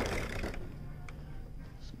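Low background room tone of a shop aisle with a faint steady high hum. There is one small click about a second in, between two spoken words.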